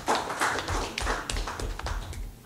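Scattered hand claps from a small audience, many irregular overlapping claps that die out near the end.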